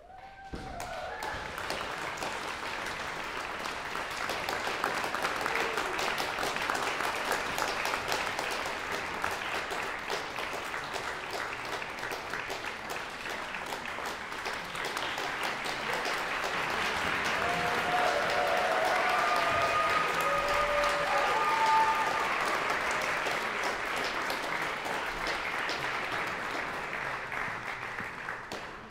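Audience applauding steadily, swelling around two-thirds of the way through, with a few voices calling out during the peak.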